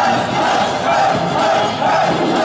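Live amplified pop song with the singer and a crowd of fans singing and shouting along.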